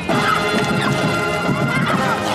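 Marching band playing: brass holding sustained notes over drums and crashing percussion hits.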